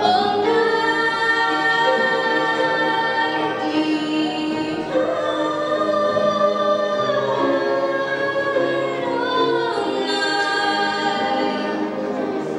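A young woman singing a slow song into a microphone, holding long notes and sliding between them, with grand piano accompaniment.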